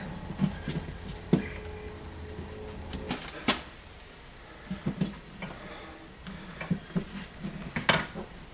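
Scattered small clicks and taps from needle-nose pliers working the threaded joint of fiberglass fish rods inside a wall opening, unscrewing the bottom rod section. One sharper click about three and a half seconds in.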